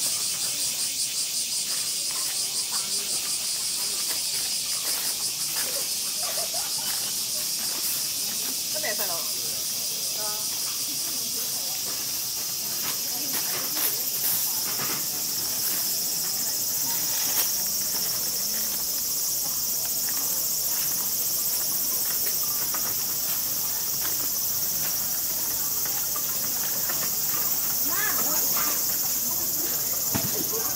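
A chorus of cicadas: a steady, high-pitched drone that pulses rapidly for the first couple of seconds, then runs on evenly. Faint voices of passers-by lie underneath.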